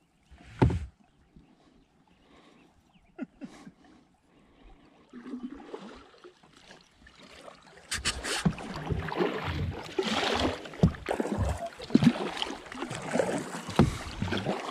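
Kayak paddling on calm water: paddle blades dipping and splashing, with drips and small clicks and one sharp knock about half a second in. From about eight seconds on, a louder, busier run of splashes and strokes.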